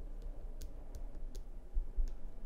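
Button presses on the Zoom M3 MicTrak shotgun microphone, picked up as handling noise through its built-in shock mount: about four sharp clicks, then a low thump near the end, over a steady low rumble. The clicks carry through because the shock mount's isolation is poor.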